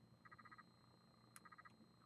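Near silence, broken by two faint, brief trills, each a quick run of about half a dozen pulses, about a second apart, with a tiny click just before the second.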